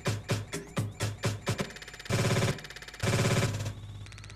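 Electronic dance track played from a DJ controller, first with a steady kick-drum beat of about two beats a second. About two seconds in, it turns into two short looped bursts that repeat rapidly, with a dip between them. This is a short loop being dropped and shifted back and forth along the track.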